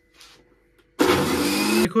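Electric mixer grinder with a stainless steel jar, run in one short burst of under a second to blend egg, salt and chopped garlic: the first mixing step of garlic mayonnaise. The motor starts suddenly about a second in and cuts off just as suddenly.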